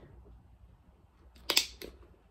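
Rotary hole punch pliers squeezed shut through the cork bag's edge, punching a rivet hole: one sharp click about one and a half seconds in, then a smaller click as the jaws let go.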